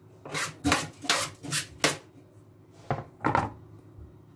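Quick scraping and knocking strokes from a plastic cutting board being cleared of pepper seeds and handled. There are about five strokes in the first two seconds, then two more about three seconds in, the last a firmer knock as the board is set back down on the stone counter.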